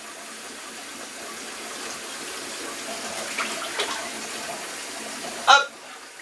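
Shower water running steadily into a bathtub, with a short vocal sound near the end.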